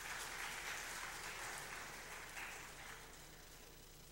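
Faint audience applause, dying away near the end.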